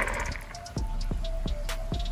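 Large salt crystals poured from a glass measuring cup splash into a bucket of water, the splash fading within the first half second. Then background music with a steady beat.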